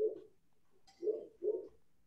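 A dove cooing: three short, low, soft coos, the last two about half a second apart.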